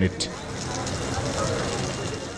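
Steady outdoor background noise of a crowd gathered at the scene, with a low running-engine hum under faint voices.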